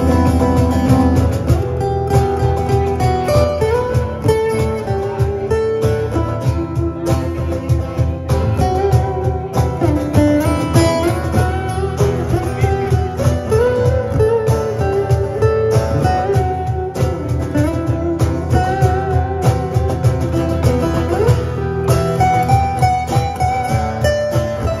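Live acoustic band playing an instrumental passage: two acoustic guitars, chords strummed under a single picked melody line that slides between notes, over a steady cajón beat.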